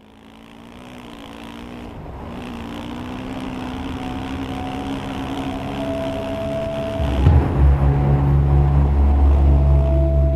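Dirt bike engine running with wind and trail noise, fading in and growing louder. About seven seconds in, a deep sustained musical drone with a steady high tone comes in and dominates.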